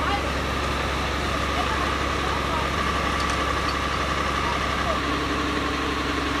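Fire engine's motor running steadily to drive the pump that feeds the water hoses: a low drone with a steady high whine over it.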